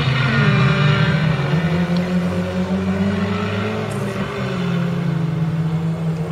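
Engines of several folkrace cars running hard on a dirt track, a loud steady multi-tone drone whose pitch rises briefly near the start and sags a little past the middle.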